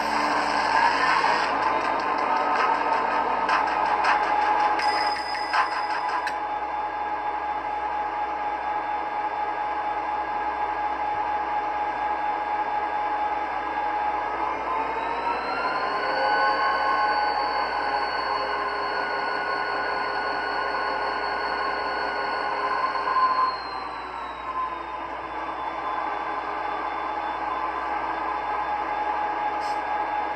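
Sound system of an HO scale model diesel locomotive idling at a steady pitch, with crackling clicks over the first few seconds. About halfway through the engine revs up, holds for several seconds, then settles back to idle near the end.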